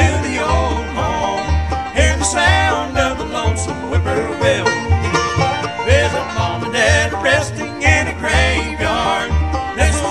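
Bluegrass band playing: fiddle, banjo, acoustic guitar and upright bass, with the bass walking about two notes a second under the fiddle and banjo lines.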